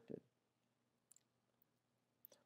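Near silence: a pause in a spoken lecture, with the end of a word at the very start and two faint small clicks about a second in.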